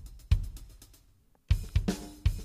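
Drum loop from the EZdrummer 2 software drum kit (Modern kit, Prog Rock preset) with kick, snare and hi-hat. One hit dies away into a brief gap, and the groove starts up again about one and a half seconds in.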